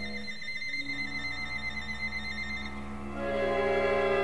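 Contemporary concert music for solo violin and a fifteen-instrument ensemble, made of held, sustained tones. The texture thins out near the start, then a louder cluster of sustained notes swells in about three seconds in.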